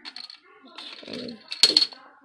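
Plastic Connect Four discs clicking and clattering against each other, with a loud cluster of sharp clicks near the end.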